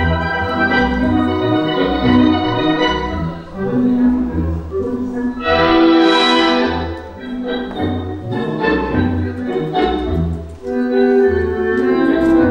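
Instrumental tango music played over the hall's sound system: bandoneon-led orchestra with sustained, reedy chords over a marked, pulsing bass beat.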